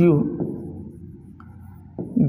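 A man says "You", then a pen writes faintly on the screen of an interactive display board, with a few light ticks over a steady low hum.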